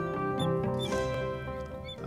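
Background music with steady held notes, with a few short, faint high squeaks of a marker pen writing on a glass board.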